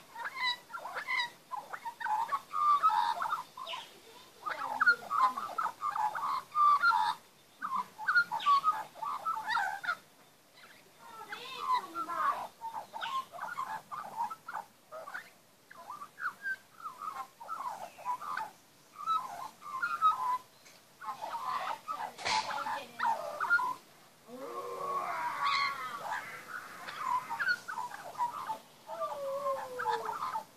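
A young Australian magpie singing a long run of short, varied, bending notes in phrases a few seconds long, with brief pauses between them. A deep downward-gliding note comes near the end.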